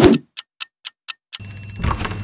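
Clock ticking four times, about a quarter second apart, then an alarm clock suddenly ringing with a high, rapid ring about one and a half seconds in. A brief swish opens it.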